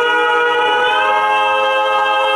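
Male a cappella quartet holding a sustained chord without words, the voices moving up to a new chord about halfway through.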